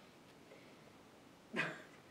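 Faint room tone, then about one and a half seconds in, a woman's short breathy exhale, like a brief stifled laugh.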